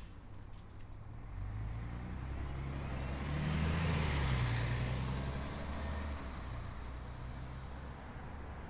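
A motor vehicle passing by: low engine rumble and road noise swell to a peak about four seconds in, then fade away.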